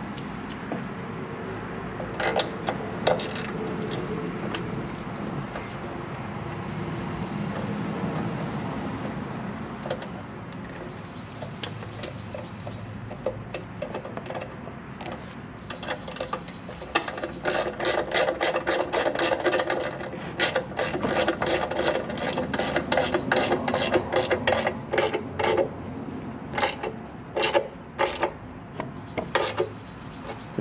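Hand tools working the bolts of a metal engine cover: rubbing and handling of parts at first, then, from about halfway in, a socket ratchet clicking in quick repeated strokes as the bolts are run down.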